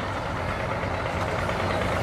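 Outboard boat motors idling with a steady low engine note.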